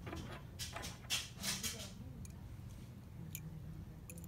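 Metal house keys being handled: a brief rustling scrape as they are picked up, then two light clicks of metal on metal, over a faint steady hum.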